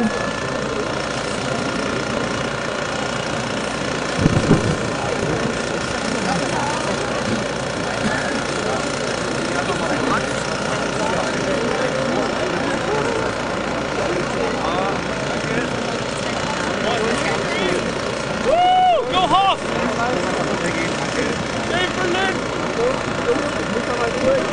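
A crowd of many people talking at once, over the steady sound of a vehicle engine idling.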